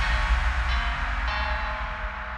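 Background music: sustained notes entering one after another over a low rumble.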